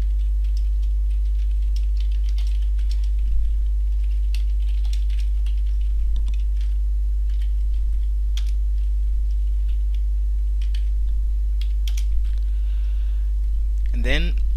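Computer keyboard typing: irregular key clicks in short runs, with a few pauses. Under it runs a loud, steady low hum.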